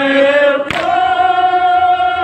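Group of men chanting a noha in unison on long held notes, the pitch stepping up a little under a second in. At that moment a single sharp slap is heard, the hand-on-chest beat of matam.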